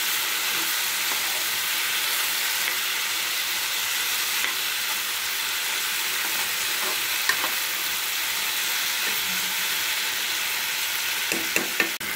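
Diced potatoes, tomatoes, onions, green chillies and prawns sizzling in hot oil in a kadai while a spatula stirs them. The hiss holds steady throughout, with a few light taps of the spatula on the pan, most of them near the end.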